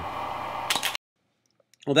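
Steady rushing of the cooling fan inside a studio flash head, then a quick clatter of a DSLR shutter firing the flash, after which the sound cuts off abruptly.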